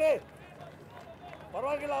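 Short, loud shouted calls from a man's voice, one cut off right at the start and another near the end, with steady outdoor stadium noise between them.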